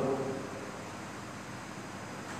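Steady background hiss, with the tail of a man's speech fading out in the first moment.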